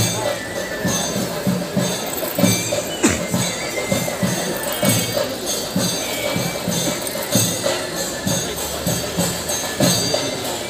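Theyyam percussion: chenda drums and elathalam hand cymbals playing a steady driving rhythm of about two to three strikes a second.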